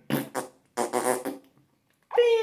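Two short breathy puffs of air blown through a man's lips, an exasperated "pff" sound while he is annoyed at his phone.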